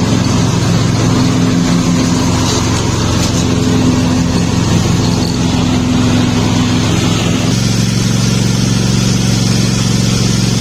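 Cub Cadet riding lawn mower's engine running steadily while mowing, with the note shifting about three quarters of the way through.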